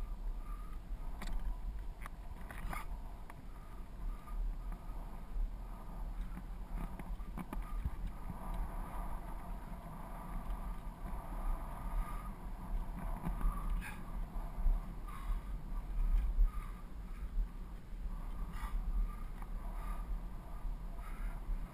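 Wind rumbling on a GoPro microphone as a bicycle rolls along a paved path, with steady tyre and riding noise and a few sharp clicks.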